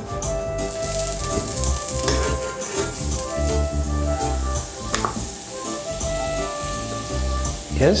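Butter sizzling as it melts in a hot frying pan, the sizzle starting about a second in, with background music playing.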